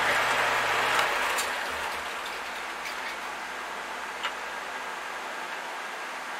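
A low motor hum with a broad hiss cuts off about a second in, like a power tool being switched off. After that a quieter steady hiss remains, with a few light clicks.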